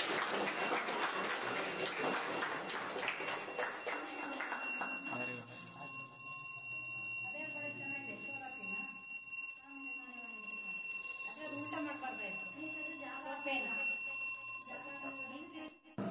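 Small battery-powered electric bell with a metal dome gong, ringing steadily as the alarm of a model door alarm, set off when the door is opened. It cuts off suddenly just before the end.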